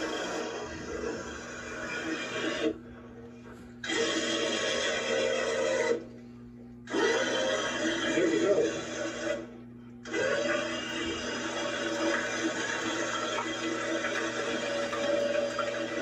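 Tow truck engine running steadily under load as its chain drags a fence post out of the ground, heard played back through a TV speaker. The sound cuts out abruptly three times for about a second each.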